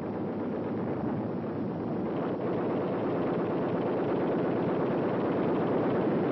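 Battle sound effect of gunfire: a dense, continuous rattle and rumble that slowly grows louder.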